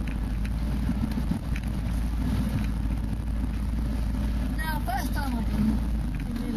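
Off-road 4x4's engine running steadily at low speed, heard from inside the cab as it crawls along a rutted mud track, with a few short knocks and rattles from the bodywork and suspension.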